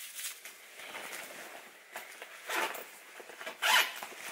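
Rustling and handling of a black leather handbag as it is opened and searched by hand, with a few short scraping sounds, the loudest near the end.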